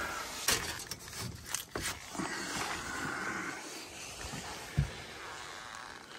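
Handling noise at an open gas furnace cabinet: a few sharp clicks and knocks in the first two seconds, then a faint steady background noise and a brief low thump nearly five seconds in.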